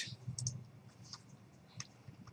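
A few faint, scattered clicks from a computer keyboard and mouse in use while editing code, over a faint low room hum.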